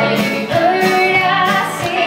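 Live country-pop band playing, with a woman singing the lead vocal over electric guitar, keyboards and drums.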